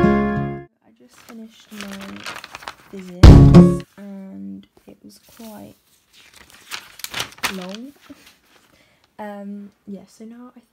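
Background music fading out in the first half-second, then a quiet voice in short, broken phrases, with a brief loud burst about three seconds in.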